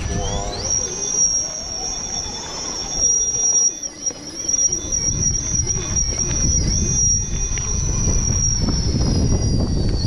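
RC rock crawler's electric motor and gear drivetrain whining as it crawls up a steep rock face. The high whine rises about half a second in, then holds with small dips in pitch as the throttle varies. A low rumble runs underneath.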